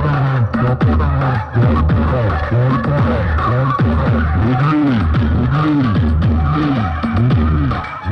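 Loud DJ dance music with a heavy pulsing bass beat and repeated swooping bass tones, played through a wall of horn loudspeakers.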